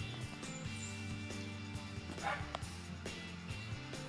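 Soft background music with held notes that shift every second or so, and a dog barking once, faintly, about two seconds in.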